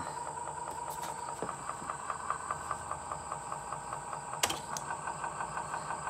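Open 8-track tape deck mechanism running: a steady motor hum and whir with rapid fine ticking, and one sharp click about four and a half seconds in.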